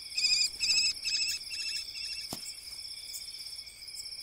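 Night chorus of crickets and other insects chirring steadily. A louder pulsed chirping call repeats about four times in the first two seconds, each one fainter than the last. There is a single soft click a little past the middle.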